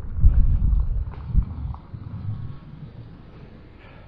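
Wind buffeting the camera microphone as a low, uneven rumble that dies down about halfway through, leaving faint outdoor background noise.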